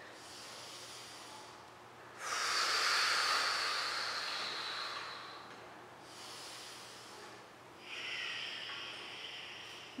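A woman breathing audibly while holding an inversion. A long, loud exhale starts suddenly about two seconds in and fades over about three seconds. Softer breaths come before it, and another breath comes near the end.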